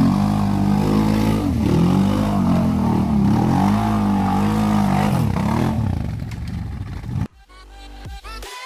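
Can-Am Renegade ATV's V-twin engine revving up and down under load as it pushes through deep muddy water, with water splashing. The engine fades near the end, and electronic music cuts in suddenly about seven seconds in.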